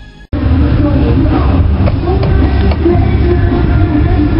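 Car stereo playing music with heavy bass through its subwoofers, two 12-inch Kenwoods and a 15-inch Power Acoustik driven by two 800-watt Kenwood amps. It cuts in suddenly about a third of a second in, after the fading end of an intro theme.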